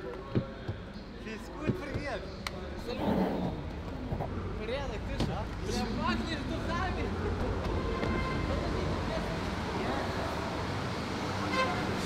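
Curbside traffic: a steady hum of idling and passing vehicles with indistinct voices, and a couple of sharp knocks in the first two seconds.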